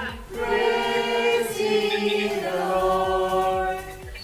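A group of people, adults and children, singing together without accompaniment, holding long notes.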